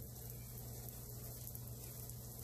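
Quiet room tone: a faint steady low hum under light hiss, with no distinct sound events.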